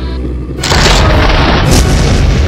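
Cartoon sound effect: a low rumble, then about half a second in a sudden loud boom with a rushing noise that carries on, as a monster appears in a puff of smoke. Background music runs under it.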